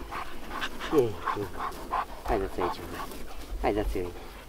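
Large Romanian shepherd dogs playing: about five short whines and yelps, each falling steeply in pitch.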